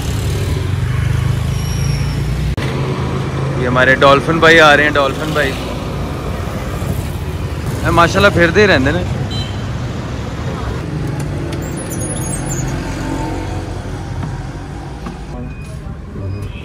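Street traffic: motorcycle and car engines running steadily on a busy city street, with short bursts of people talking about four and eight seconds in.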